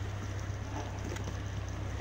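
Steady low rumble of wind buffeting the microphone, with no distinct events.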